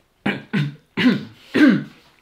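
A person making short wordless vocal sounds, four in quick succession, each falling in pitch, the last the loudest.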